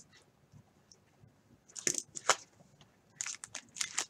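Crinkling of the plastic wrapper on an unopened rack pack of baseball cards as it is picked up and handled, in two short bursts of crackles, about two seconds in and again near the end.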